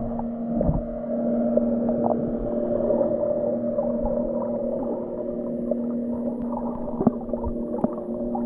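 Underwater sound picked up by a GoPro under the lagoon surface: a steady low hum made of several held tones, with scattered sharp clicks, the clearest about seven seconds in.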